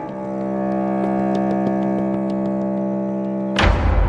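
Dramatic TV background score: a sustained synth chord held steady, then a sudden deep boom hit about three and a half seconds in that opens into low, tense music.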